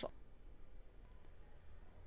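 A few faint, sparse clicks over a low steady hum of room tone.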